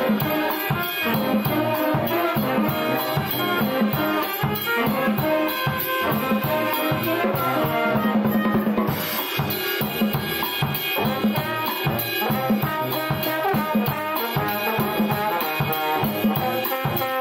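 Brass band playing a New Orleans–style tune: horns and sousaphone over a drum kit keeping a busy beat, with a long held low note about eight seconds in.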